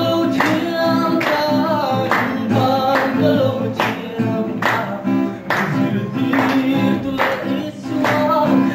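A group of people singing a worship song together to a strummed acoustic guitar, with hand claps keeping the beat about twice a second.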